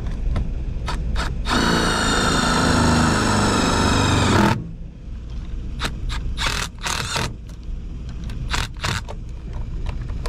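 Cordless drill-driver running steadily for about three seconds, driving a screw to mount a transformer, followed by scattered knocks and clicks from handling the tool and parts, over a steady low rumble.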